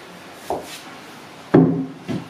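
Kettlebell set down on a wooden plyo box with a solid thud about one and a half seconds in. A lighter knock comes about half a second in.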